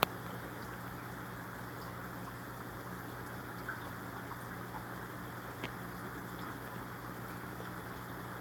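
Steady low hum with a faint watery hiss: the running air pumps and filters of a room full of aquariums. A light click right at the start and a couple of faint ticks later.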